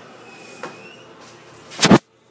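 Quiet background with a faint click, then one loud, short thump near the end.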